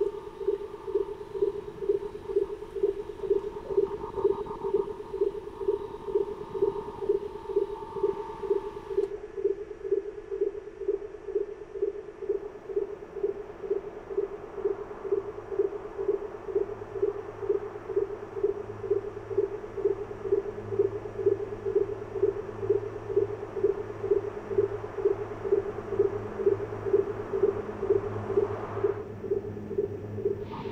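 Electronic soundtrack drone: a steady mid-pitched tone pulsing at about two beats a second, like a sonar or tracking beacon. A higher hum sits over it for the first third, then drops out, and a low hum comes in about halfway through.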